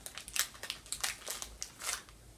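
A person biting and chewing a crisp chocolate sandwich cookie: a run of short, sharp crunches.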